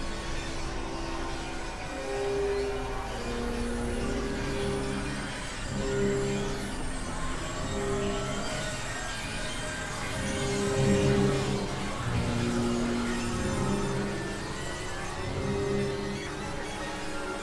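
Experimental electronic synthesizer music: held synth notes stepping between a few low-mid pitches every second or so, over a hissing noise bed with a few high whistling tones gliding downward partway through.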